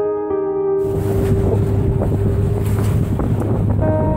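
Wind buffeting the microphone and waves rushing past a sailboat under way in choppy water, cutting in sharply about a second in. Soft sustained keyboard music plays before the cut and comes back just before the end.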